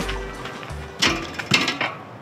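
Background music fades out, then two thumps about half a second apart as feet land on a steel campfire ring.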